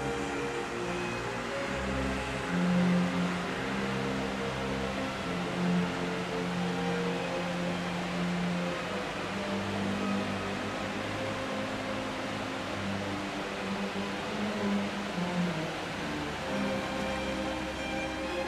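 Slow orchestral background music with long held low string notes, over a steady rushing noise of falling water from a waterfall.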